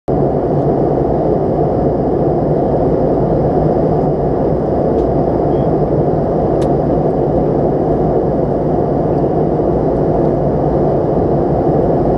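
Steady cabin noise of a McDonnell Douglas MD-88 airliner in flight: airflow over the fuselage and its rear-mounted Pratt & Whitney JT8D turbofans, heard as an even, dull noise from inside the cabin. A faint click comes a little past halfway.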